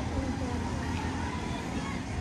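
Outdoor ambience: faint voices of people nearby over a steady low rumble.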